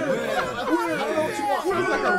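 Several voices talking over one another in an indistinct jumble of chatter.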